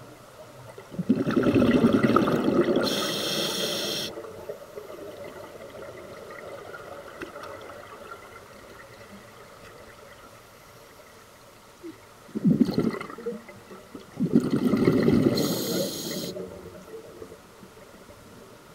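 Scuba diver's breathing through a regulator underwater: two rushes of gurgling exhaust bubbles, about a second in and again near the end, each with a short hiss near its end.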